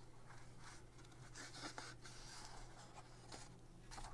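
Faint rustling of a glossy magazine page being turned and smoothed flat by hand, in a few soft swishes mostly in the first half.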